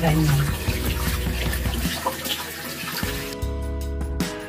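Water running from a bathroom sink tap as hands are rubbed and rinsed under the stream. About three seconds in, the water sound drops back and background music with steady tones takes over.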